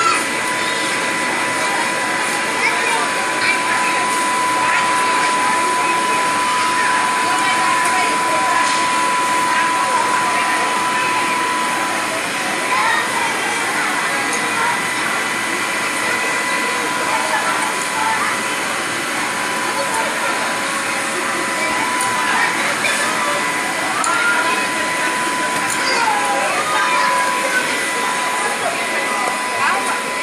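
Indistinct chatter of children and adults, with a steady high-pitched hum running underneath.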